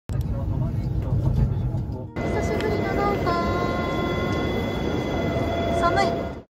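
Low rumble of a moving train heard from inside the carriage. About two seconds in it cuts off and gives way to station platform sound: a steady hum with high steady tones and a few short pitched tones over it.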